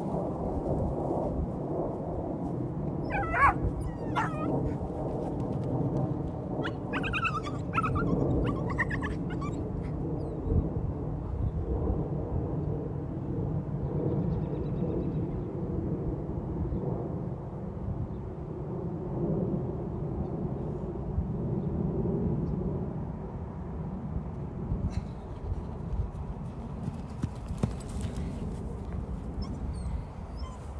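A dog whining in short high-pitched calls, about three and a half seconds in and again around eight seconds, over a steady low noise.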